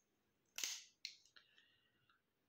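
A small knife being handled as it is brought out and raised: one sharp snap about half a second in, then a couple of faint clicks and a brief rustle.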